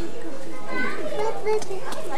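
Overlapping chatter of children's and adults' voices, with no single voice standing out.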